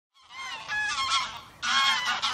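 A flock of geese honking in flight, many calls overlapping, with a short lull about a second and a half in before the honking picks up again.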